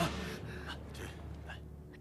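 A person's faint breathing with a few short gasps over a low steady hum.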